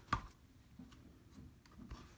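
A sharp click just after the start, then a few faint ticks and taps over quiet low background noise.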